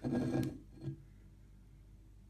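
A glass beer bottle handled on a table: a sharp click about half a second in and a soft knock just after, then quiet room tone with a low hum.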